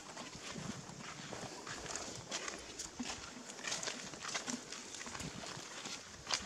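Scattered short clicks and scuffs, like footsteps on dry leaves and bare ground, over a steady outdoor hiss.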